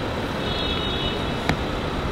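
City street traffic noise, a steady hum of passing vehicles, with a single sharp click about one and a half seconds in.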